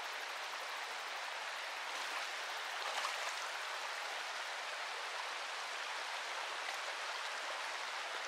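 Shallow creek running over a gravel bed and small riffles: a steady water hiss with no change in level.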